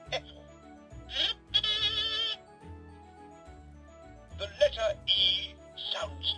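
Hey Duggee Smart Tablet toy playing its electronic children's tune, with a brief warbling vocal sound about one and a half seconds in and short voice sounds near the end.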